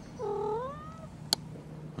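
A domestic cat gives one meow, rising in pitch and then falling, under a second long. A single sharp click follows about a second later.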